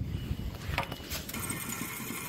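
Handling rumble and a couple of clicks, then, just over a second in, a motorised fishing-line spooling machine starts whirring steadily as fresh line is wound on to replace year-old line.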